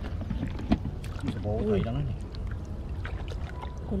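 Light splashing and dripping of shallow water as a caught goldfish is handled in cupped hands, with scattered small clicks over a steady low rumble, and a short exclaimed voice about halfway through.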